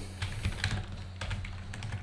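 Typing on a computer keyboard: a run of light, irregular key clicks over a faint steady low hum.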